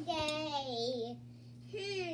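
A child's voice in a drawn-out sing-song call, its pitch wavering and sliding down over about a second. Another short call starts near the end.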